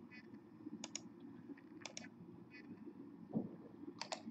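Faint clicking from working a computer, in close pairs of sharp clicks about once a second, over a low steady hum.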